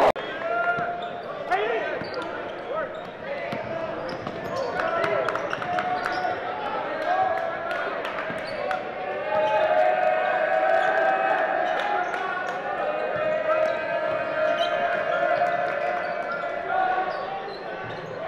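A basketball being dribbled on a hardwood gym floor, with repeated bounces under the chatter and shouts of a crowd of spectators and players.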